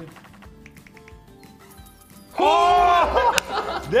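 Online slot game sound effects: faint quick ticking and soft short tones. About two seconds in, a loud, drawn-out voice exclamation follows, with one sharp click near the end.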